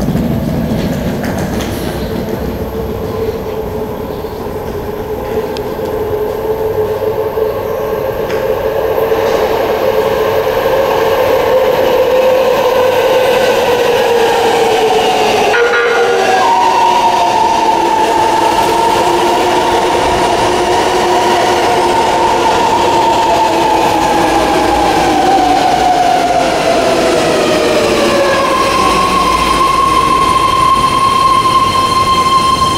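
BART train entering an underground station: its whine climbs in pitch as it approaches through the tunnel, then falls steadily as the train slows to a stop alongside the platform. A single steady tone starts near the end.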